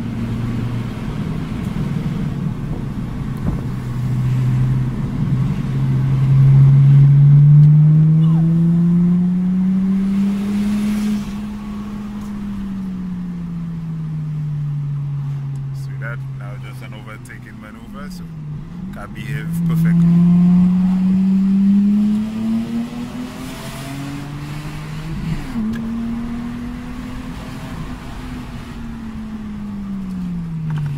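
Lexus IS200's 1G-FE straight-six heard from inside the cabin while being driven, running on a standalone Speeduino ECU. The engine note climbs and falls several times as the car accelerates and eases off, with two main pulls, the first building over several seconds and the second about two-thirds of the way through.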